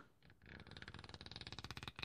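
Pages of a small paper flip book riffled under the thumb: a quick, quiet flutter of page flicks that starts about half a second in and runs for about a second and a half.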